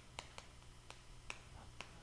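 Faint, irregular sharp taps and clicks of chalk striking a chalkboard as characters are written, about half a dozen ticks.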